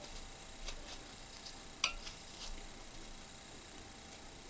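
Quiet handling of a foamiran (craft foam) petal by fingers: faint soft ticks and rustles, with one sharper click a little under two seconds in.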